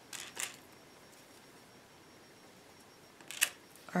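Small glass mosaic pieces and beads clicking faintly as they are handled on a work table, with one sharper click about three and a half seconds in.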